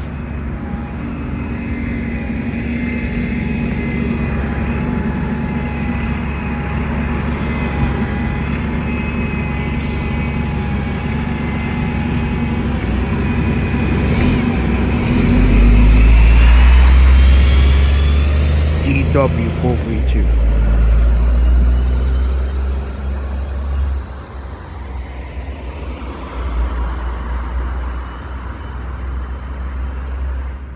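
London double-decker bus engine running steadily at the stop, then pulling away under hard acceleration: a deep engine rumble swells loudly about halfway through, with a whine rising in pitch, then eases off near the end.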